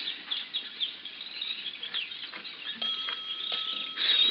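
Radio-drama sound effects: many short, high chirps and squeaks, with a steady high tone coming in near the end.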